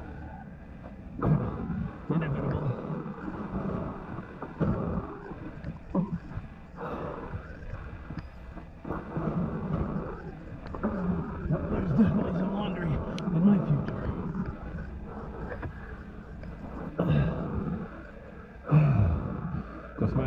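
A person crawling and pushing himself with his arms across a dirt cave floor: scraping and shuffling of body, gloves and knee pads on the dirt, with low grunts and breathing from the effort coming and going.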